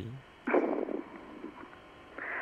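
A brief breathy vocal sound from a caller, heard through a telephone line, followed by faint line hiss.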